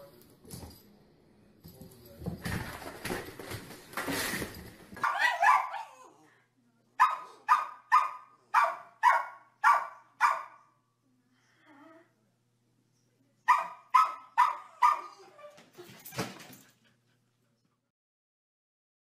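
Small dog barking in sharp, evenly spaced runs: about seven barks at roughly two a second, then after a pause a quicker run of about five. They follow a few seconds of rustling noise.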